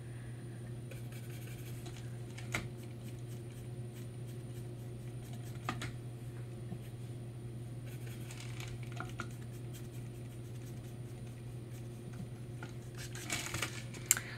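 Faint scratching of a paintbrush working acrylic paint on a palette, with a couple of light taps, over a steady low hum.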